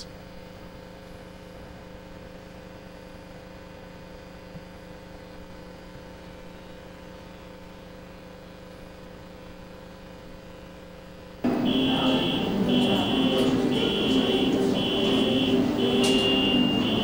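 Steady low room hum, then, about eleven seconds in, the loud soundtrack of subway-station footage cuts in: a high electronic beep repeating about once a second over a steady hum and station noise.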